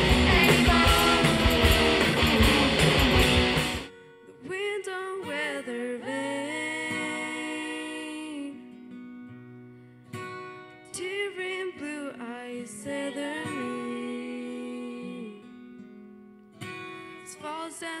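A rock band plays loudly until about four seconds in, then drops suddenly to a quieter passage of ringing guitar chords, repeated in phrases a few seconds long, with singing coming in at the very end.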